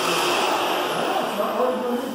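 Vacuum cleaner running steadily, sucking up cut hair.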